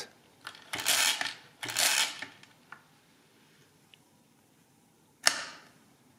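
Hamann Manus E mechanical calculator cranked twice in subtraction mode, each turn a short burst of gear noise, the two about a second apart. A single sharp clack comes about five seconds in.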